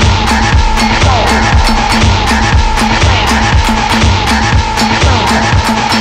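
Electronic music: a steady kick-drum beat about twice a second with crisp hi-hat ticks between, under sustained synth notes with short falling glides.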